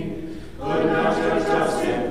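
Church choir singing unaccompanied Orthodox liturgical chant: one phrase dies away, there is a brief breath about half a second in, and the next phrase begins in full voice.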